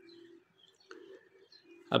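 A bird calling faintly in the background: three short, low, steady tones in a row.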